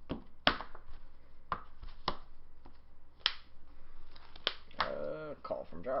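Sleeved trading cards being handled and snapped down onto a playmat: about half a dozen sharp clicks spread out, with a brief voice near the end.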